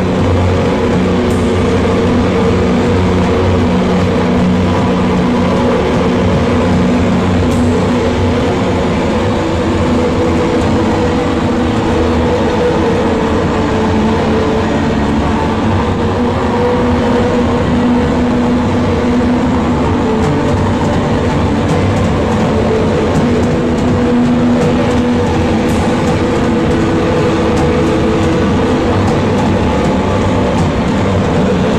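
Loud live noise-rock drone: a heavily distorted band sound of long held notes, with a dense wash of noise and no clear beat.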